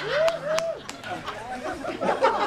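Several voices chattering at once, with a woman's short laughing sounds near the start.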